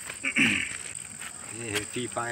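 Steady high-pitched insect chorus. A short burst of a person's voice is the loudest thing, about half a second in, with another brief voice sound near the end.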